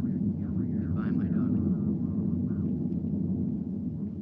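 Steady low rumbling drone, a radio-drama sound effect of the spaceship's hum. Faint voice fragments fade in and out over it in the first couple of seconds.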